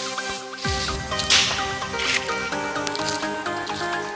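Background music with a short repeating melody; low bass notes come in just before a second in, and there is a brief hissing swell about a second in.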